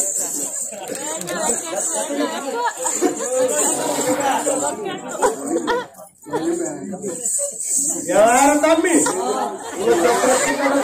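Men talking, several voices back and forth, with a brief pause about six seconds in and a louder voice near the end; a faint steady high hiss runs underneath.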